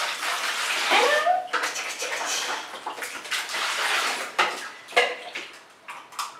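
Water splashing and being poured in a plastic baby bath tub around a toddler, in uneven surges with a few small knocks. A brief rising voice sound comes about a second in.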